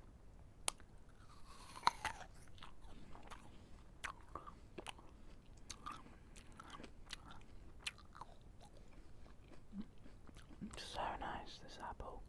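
Biting and chewing a raw red apple close to the microphone. Sharp crunches of the bites, the loudest about two seconds in, are followed by moist crackling chewing, with a longer crunchy burst near the end.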